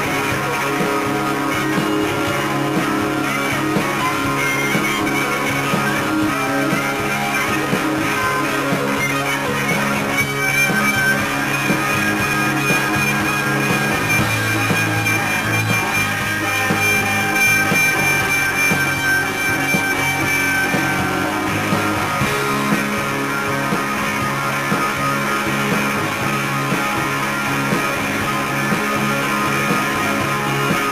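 Live rock band playing: electric guitars, bass guitar and drums. A single high note is held for about ten seconds in the middle.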